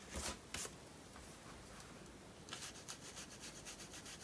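Flat paintbrush rubbing acrylic paint onto paper, the bristles scratching faintly. There are two short strokes near the start, then a quick run of short strokes from about halfway.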